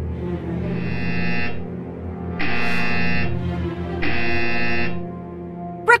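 An electronic alarm buzzer sounds three times, each buzz just under a second long with even gaps between, over steady background music. It is the alert for an incoming call for help.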